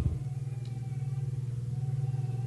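A steady low hum with a faint thin tone above it, unchanging, during a pause in speech.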